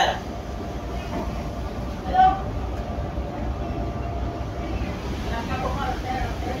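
A ship's engine running, a steady low rumble, with a short burst of a voice about two seconds in.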